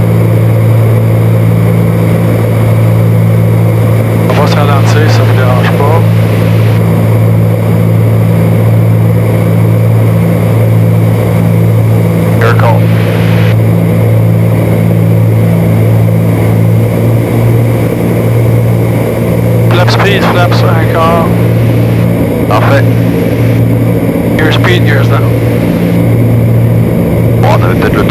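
Cessna 310Q's twin six-cylinder piston engines and propellers heard inside the cockpit, a loud, steady, deep drone at even power during the approach. Short snatches of voice come through a few times.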